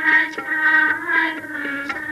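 Devotional hymn to Saraswati sung by voices, accompanied by a tabla pair whose short strokes sound under the held notes.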